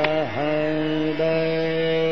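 Hindustani classical male vocal in Raag Amritvarshini: the voice makes a quick downward slide and back, then holds a long steady note, over harmonium accompaniment. A single tabla stroke sounds at the start.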